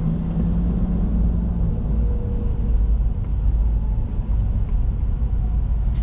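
Steady low rumble of a car's engine and tyres heard from inside the cabin as it creeps along in slow traffic.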